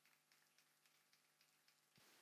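Near silence, with very faint, scattered hand claps from a small group applauding.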